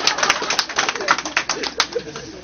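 A group of men laughing and talking over one another, with scattered short sharp clicks.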